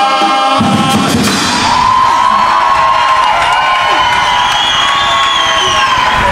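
A murga chorus's final sung chord cuts off about half a second in, and the audience breaks into applause and cheering, with a few long high calls rising above it.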